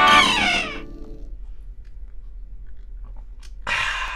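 End of an acoustic guitar song: a final held note sliding down in pitch over the last chord, fading out within about a second. Low room noise follows, then a short vocal sound near the end.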